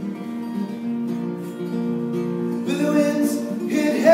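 Steel-string acoustic guitar picked and strummed in an instrumental passage of a folk song. A man's singing voice comes in near the end.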